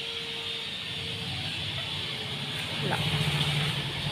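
Low background hum with no clear source, growing louder about three seconds in, with a faint steady tone in the first second.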